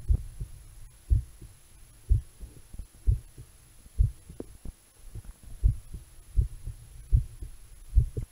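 A person's heartbeat picked up through an analogue stethoscope by a lavalier microphone fitted into its tubing: low, muffled thumps about once a second.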